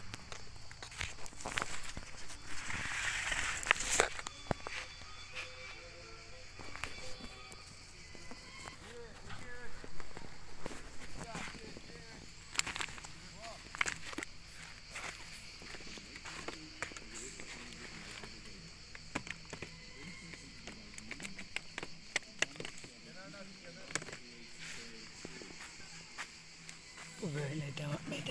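Scattered clicks and rustling from handling and footsteps, with faint voices now and then; louder rustling a few seconds in.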